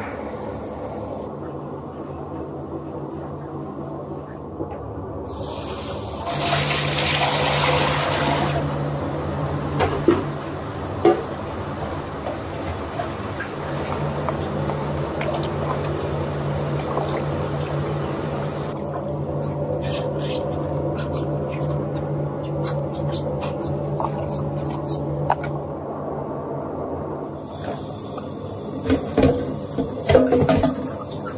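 Tap water running and splashing in a stainless steel sink as herbal decoction machine parts are rinsed, over a steady low hum. A loud rush of water comes for a couple of seconds early on, and later a run of light clinks and knocks from metal parts being handled.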